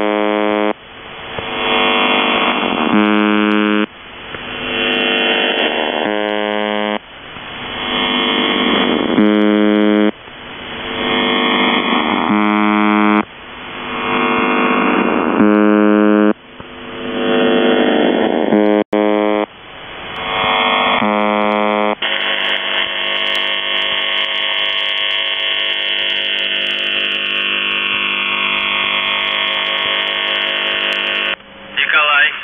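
UVB-76 "The Buzzer" on 4625 kHz shortwave: a harsh, low, buzzing tone that dips and swells again about every three seconds over radio noise. For roughly the last third it runs as one continuous buzz, the stretch that leads into a voice message.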